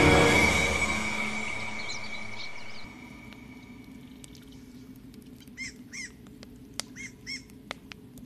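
Dramatic soundtrack music fades out over the first few seconds into a quiet night ambience. A bird gives two pairs of short chirps, and the ember fire gives a couple of sharp crackles.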